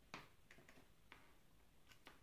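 Near silence with about five faint, irregular clicks: small metal and plastic parts of an alligator clip and its cable being handled and fitted together.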